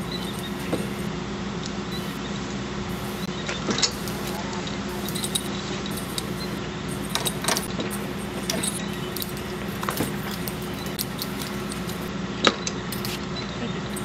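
Pump on a fuel filtration cart running with a steady hum. Scattered metallic clicks and knocks from hoses and fittings being handled sit over it, the loudest one near the end.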